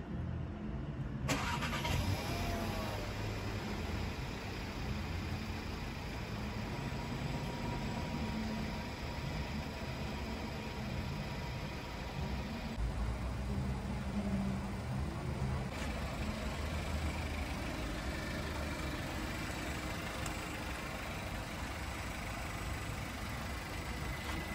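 Volkswagen Tiguan Allspace's 1.4 TSI four-cylinder petrol engine idling with a steady low hum.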